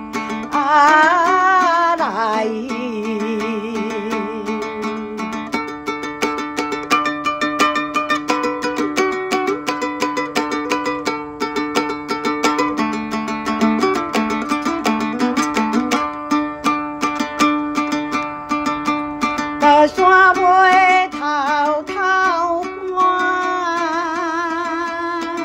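Yueqin (Chinese moon lute) plucked in a quick, steady run of notes, accompanying a Hengchun folk song. A woman sings a phrase with wide vibrato at the start and again from about twenty seconds in, and the plucked lute carries the long interlude between.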